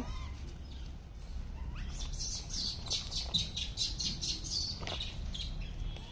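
Small birds chirping: a quick string of short, high chirps through the middle few seconds, over a faint low rumble.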